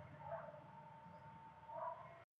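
Fingers pressing and lifting coarsely ground chana dal vada batter in a steel mixer jar, faint, with a slightly louder scrape near the start and again near the end. A steady faint high hum runs behind it.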